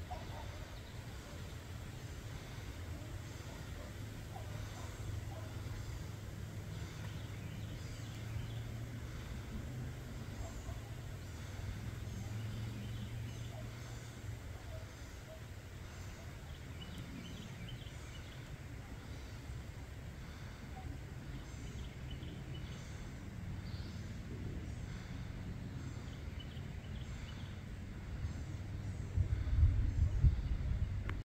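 Outdoor rural ambience: a steady low rumble on the microphone with faint, repeated bird chirps. The rumble grows louder near the end.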